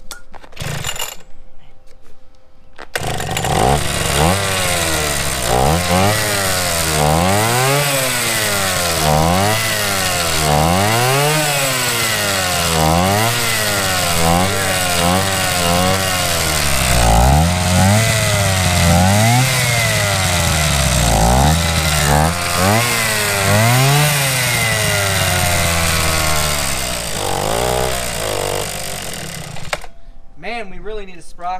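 Go-Ped scooter's small two-stroke engine catching about three seconds in, then revved up and down over and over on the throttle before dying away near the end.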